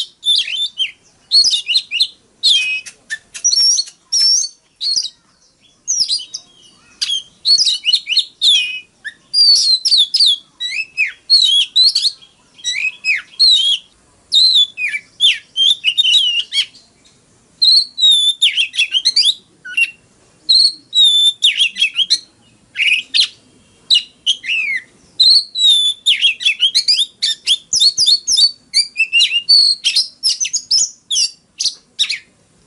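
Male Oriental magpie-robin singing: a long, varied run of quick high whistled notes and sweeping phrases, delivered in bursts with short pauses between them.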